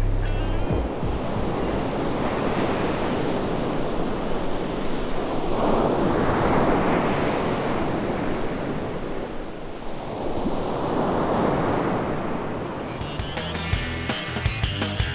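Ocean surf breaking on a sandy beach: a steady rush of water that swells twice, about six and eleven seconds in, as waves break and wash up the shore.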